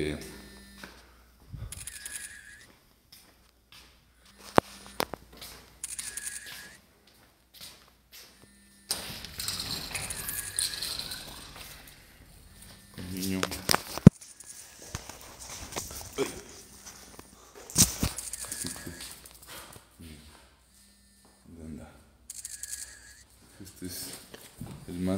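A hand-held phone being carried through a house: handling rustles and a few sharp knocks, with a noisy stretch of rubbing about a third of the way in and scattered bits of quiet speech.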